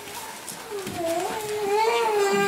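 A small child's long, wavering whining cry. It starts a little under a second in and climbs slightly in pitch toward the end.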